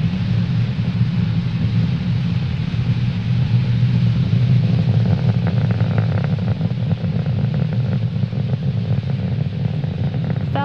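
Falcon 9 first stage's nine Merlin 1D rocket engines heard from the ground during ascent: a loud, steady low rumble, with a crackle setting in about halfway through.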